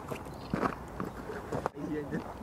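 Indistinct talk of a few people with scattered footsteps. The sound drops out briefly near the end.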